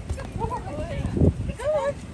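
Alaskan malamutes making short, bending whine-like vocal calls, twice, with one heavy low thump on the inflatable bouncy castle a little past the middle.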